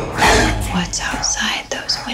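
Breathy, hard-to-make-out whispered voices layered over a low, steady drone in a thriller trailer's sound mix.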